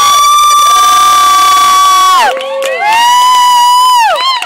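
Young people screaming and cheering in long, high-pitched, loud cries. A first scream is held for about two seconds and then drops in pitch; a second one starts just after and holds to the end.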